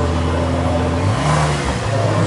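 Car engine idling, blipped once about a second in: its pitch rises briefly and drops back to idle.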